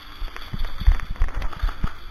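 Quick, irregular low thumps of footsteps on a concrete floor, about four to five a second, as a player moves with a body-worn camera.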